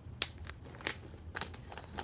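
Clear plastic wig package bag crinkling and crackling as it is handled, with a few sharp crackles; the loudest comes just after the start.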